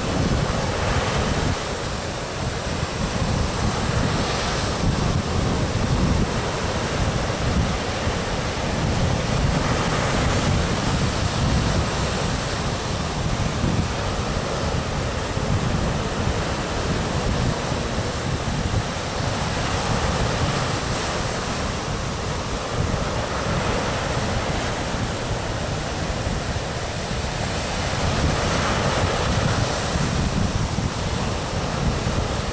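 Ocean surf breaking on a beach, a continuous wash that swells every few seconds as waves break, with wind rumbling on the microphone.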